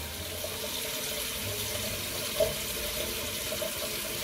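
Bathroom tap running steadily into a sink, an even hiss of water.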